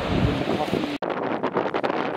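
Wind buffeting the microphone: a steady rush for about a second, then, after a sudden cut, a choppier stretch of gusts.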